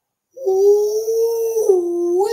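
A man's voice holding one long, high "ooooh", a howl-like exclamation. It starts about half a second in, drops briefly in pitch near the end, then rises again.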